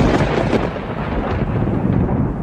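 Thunder sound effect: a loud, noisy rumble that follows a sharp crack just before, loudest at first and easing slightly after about half a second.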